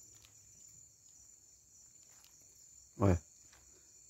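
Faint, steady high-pitched chorus of crickets.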